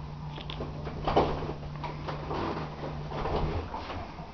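A person jumping on a bed: a few soft thumps as bare feet land on the mattress, over a steady low hum.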